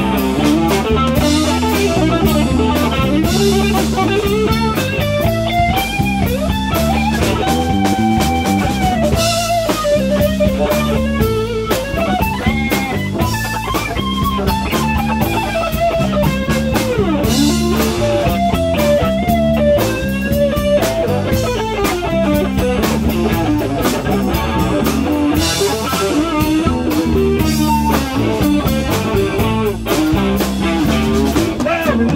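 Live electric blues band: a sunburst Stratocaster-style electric guitar plays an instrumental solo full of bent notes over electric bass and drums.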